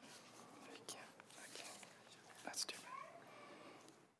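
Faint murmur of low voices and soft rustles in a large room, with no clear words.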